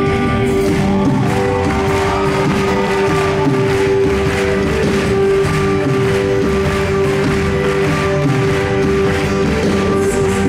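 Argentine folklore band playing live, an instrumental passage with no singing: acoustic guitars, electric bass and keyboard over a light percussion beat, with one note held steady underneath.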